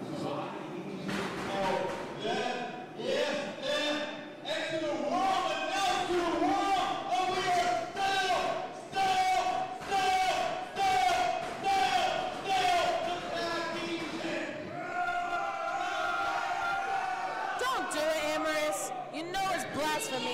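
A man's voice chanting in a sing-song through a microphone, amplified in a large hall, holding one pitched note after another in an even rhythm. A few sharp knocks come near the end.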